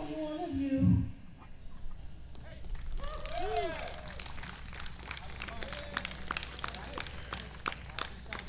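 A live rock band's song ends, its last guitar chord dying away about a second in. Then comes a quiet lull with a brief voice-like call and scattered sharp clicks.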